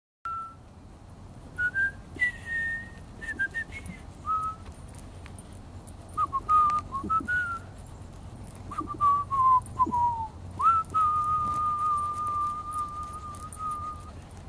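A person whistling: a string of short notes that step and slide up and down, then one long steady note held through the last few seconds.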